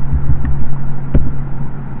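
Steady low hum and rumble in the background, with a few light keyboard clicks; the sharpest comes just over a second in.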